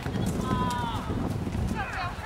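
Voices shouting across an outdoor youth soccer field, with one long high-pitched call about half a second in, over a steady low rumble and a few short sharp clicks.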